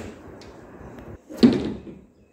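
Wood-grain laminate kitchen cupboard door pushed shut by hand, closing with a single sharp knock about one and a half seconds in.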